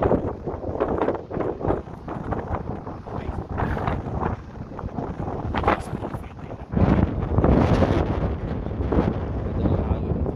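Wind buffeting a phone's microphone as a low, gusty rumble, growing louder about seven seconds in.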